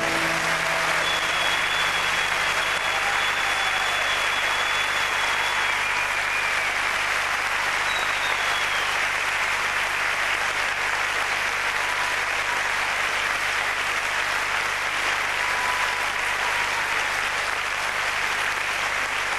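A concert audience applauding steadily at the end of a song, with the last note from the stage dying away in the first second.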